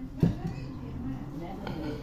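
Indistinct talking in a small room, with a single sharp knock about a quarter second in.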